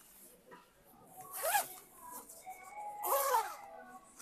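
Rain jacket's zipper being pulled: two short strokes, one about a second and a half in and one near the end, each rising then falling in pitch.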